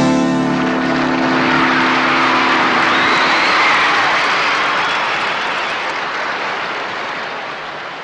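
A rock band's final chord ringing out and dying away after about three seconds, under a swell of audience applause that then slowly fades out.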